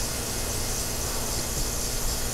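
Steady background hiss with a low rumble underneath, even throughout, with no distinct knocks or other events.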